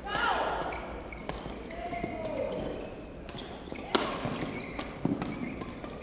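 Badminton rally on an indoor court: sharp racket strikes on the shuttlecock, several in all, the loudest about four seconds in, with shoes squeaking on the court floor between them.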